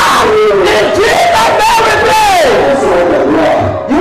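A man shouts a prayer loudly into a microphone, his voice strained, with a long cry falling in pitch about two seconds in. Many other voices pray aloud at the same time around him.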